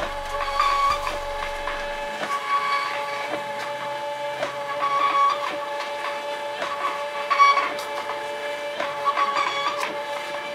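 Label printer running as it feeds out a strip of shipping labels: a steady motor whine of several tones, swelling briefly about every two seconds.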